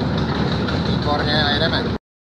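A small narrow-gauge railway locomotive and its train running, with a loud, steady rumble of engine and wheels on the rails heard from an open wagon just behind the locomotive. It cuts off suddenly at the end.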